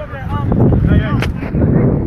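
Loud, irregular low rumbling buffeting on the microphone from about half a second in, with one sharp crack a little past a second, and voices calling over it.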